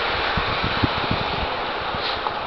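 Wind buffeting the microphone, a steady hiss, with a few soft low thumps in the middle.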